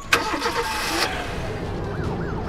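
Car engine starting, catching abruptly and then running steadily.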